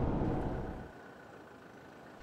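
Low rumble of a vehicle being driven, heard from inside the cab. It fades away about a second in, leaving a faint hiss.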